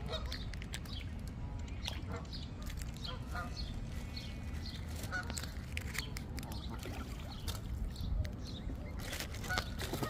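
Canada geese giving short, repeated calls over a steady low rumble.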